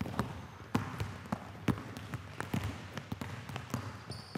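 Several basketballs being dribbled on a hardwood gym floor: irregular, overlapping bounces, a few a second.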